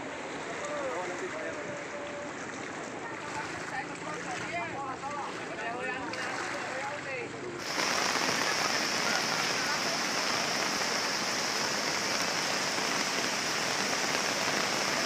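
Heavy rain falling steadily: a loud, even hiss that starts abruptly about halfway through. Before it, faint voices over a low wash of wind and water.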